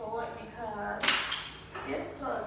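A woman's voice with a sharp snap about a second in, followed by a smaller one.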